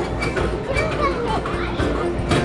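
Young children playing and calling out, over background music.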